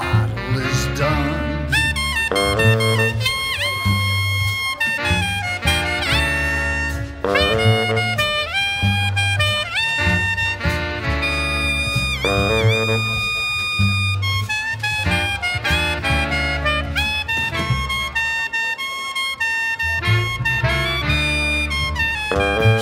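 Blues band's instrumental break: a saxophone section plays riffs and held notes over drums and upright bass, with a couple of long notes bent down in pitch and back.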